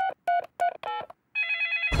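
A cartoon mobile phone being dialled: four short, evenly spaced key beeps, then a brief ringing tone as the call goes through.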